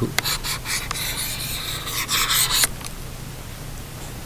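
A pen stylus scratches and rubs across a tablet's writing surface, drawing a looping line by hand, with a few light ticks of the tip. It stops abruptly about two and a half seconds in.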